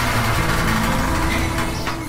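Metal lattice shop shutter being pulled down: a loud, continuous metallic rattle that stops shortly before the end.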